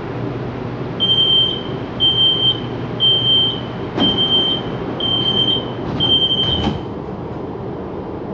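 An LRT train's door-closing warning beeper sounds six short, high beeps about once a second while the doors close, over the car's steady hum. A sharp knock comes midway, and a heavier one near the end as the doors shut.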